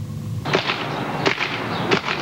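Outdoor home-video camcorder sound: a steady rushing noise with a few sharp pops.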